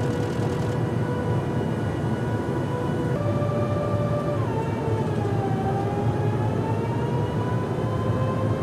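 Steady in-flight jet engine drone with a low rumble and a whining tone, as heard aboard an aircraft. The whine jumps in pitch about three seconds in, then dips and slowly climbs again.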